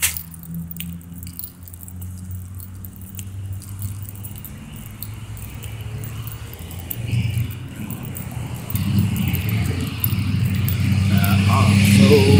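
A steady low mechanical hum, like a running engine, that swells louder in the second half, with a few faint clicks in the first few seconds.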